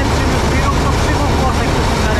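Massey Ferguson 86 combine harvester running steadily while cutting grain, heard from inside its cab as a loud, even drone.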